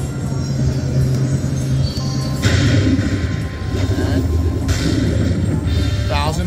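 Slot machine bonus music from an Aristocrat Dollar Storm machine during its Super Grand Chance reveal. A louder, brighter sound effect comes in about two and a half seconds in and stops just before five seconds, as the tapped coin turns into a $1,000 prize.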